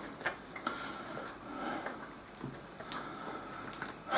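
Faint handling sounds: a few light, separate ticks and taps over quiet room tone.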